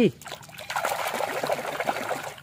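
Water in a tub being churned and splashed by a hand washing a small toy, a busy, continuous splashing that starts about a third of a second in.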